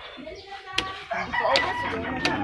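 A rooster crowing: one long, drawn-out call starting about half a second in, with a few sharp clicks over it.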